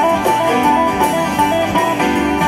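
Live band playing an instrumental break: a lead line of quick, short notes over strummed acoustic guitars, bass and drums.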